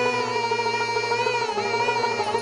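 Bengali Baul folk song: a woman holds a long sung note with vibrato over fast-plucked dotara strings and a steady low drone, which changes pitch about halfway through.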